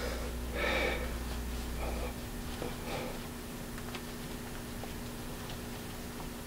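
A man's audible exhale about half a second in, then faint small clicks and taps of hands working a wristwatch case.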